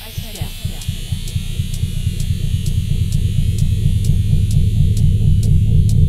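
Electronic dance track: a distorted, buzzing bass synth pulses in a fast even rhythm under a regular high tick, growing steadily louder as a build-up.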